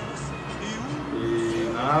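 A man's voice, muffled by a face mask, making a short hesitation sound: a brief rising glide, then one steady held note for about half a second before he speaks again near the end.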